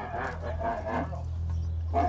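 Bactrian camel moaning, its voice wavering in pitch, while restrained for a rectal pregnancy check.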